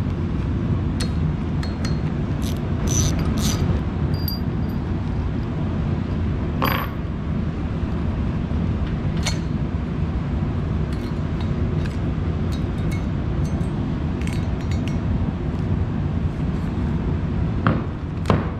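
Torpedo heater running steadily with a low hum, while steel bolts and a socket wrench clink now and then as the end-cover bolts of a rotary vane aerator motor are taken out and set down.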